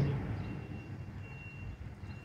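Faint steady outdoor background noise with a thin, high, steady tone through the middle: open-air ambience in a pause between sentences of a speech.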